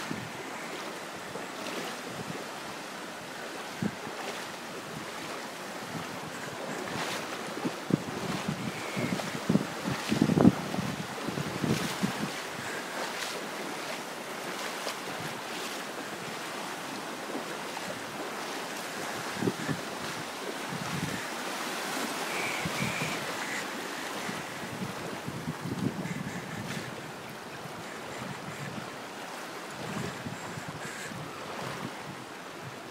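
Sea surf washing steadily in the shallows, with wind buffeting the microphone and a cluster of louder low bumps about ten seconds in.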